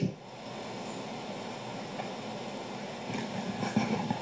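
Steady, even background noise, a low rumbling room tone with no speech in it.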